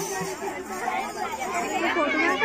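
Many women's voices talking at once in overlapping chatter, with no music playing.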